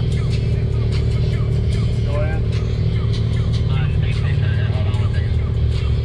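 Music with vocals over the steady low running of a Can-Am Maverick X3 side-by-side's engine.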